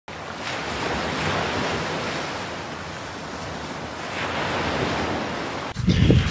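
Sea waves washing in and out: a steady rushing surf noise that swells twice and ebbs between, then cuts off abruptly near the end.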